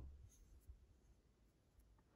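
Near silence: room tone with faint handling noise from fingers turning a small steel tensioner, and one light tick about two-thirds of a second in.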